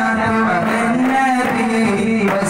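Voices singing an arabana muttu song, a long held note that bends at its end and is taken up again, for the group performing with arabana frame drums.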